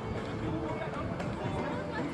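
Indistinct voices of players and onlookers calling out across an outdoor soccer pitch, too distant for words to be made out, over a steady low outdoor background noise.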